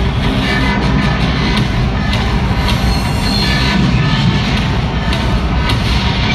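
Loud dramatic music played over an arena's sound system, with a heavy low end and echoing through the hall.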